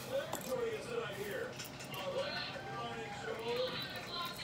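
Indistinct voices talking quietly in the background, too low to make out words.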